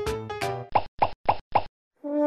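Four short cartoon plop sound effects in quick succession, about a quarter second apart, following the tail of a music cue.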